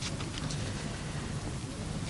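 A pause in a man's speech, filled by a steady low hiss of background noise with no distinct events.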